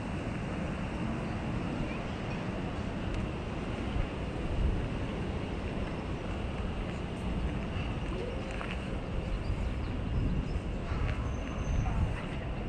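Steady outdoor ambience: a continuous low rumble and hiss with no distinct events.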